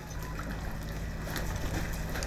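Long-tail boat engine running steadily with a low hum.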